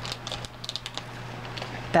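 Crinkling and crackling of a small plastic blind-bag pouch being torn open by hand, with a quick run of sharp crackles about half a second to a second in.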